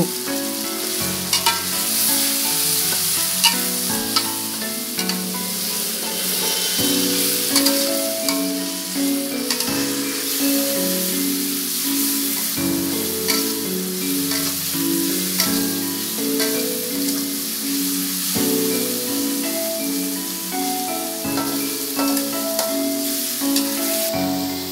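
Spice paste and leaves sizzling in hot oil in a wok while a spatula stirs and scrapes against the pan, with scattered clicks of the spatula on the wok. A simple background melody plays underneath.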